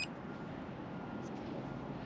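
A single short electronic beep from the Bluetti AC200P's touchscreen as it is tapped, followed by faint steady outdoor background noise.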